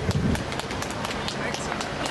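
Rapid clicks or taps, several a second and unevenly spaced, over outdoor crowd voices, with a short low voice near the start.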